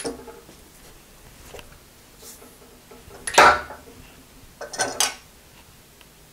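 Metal clinks and rattles of a bent steel rod being handled and worked out of a steel rod-bending jig on an arbor press: a click at the start, a louder clatter about three and a half seconds in, and a shorter rattle about five seconds in.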